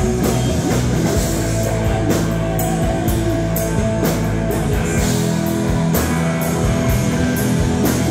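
Live rock band playing: electric guitars over a drum kit, with snare and cymbal hits on a steady beat about twice a second.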